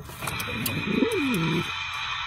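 A domestic pigeon cooing once, a low call that rises and then falls in pitch, over a steady high-pitched tone.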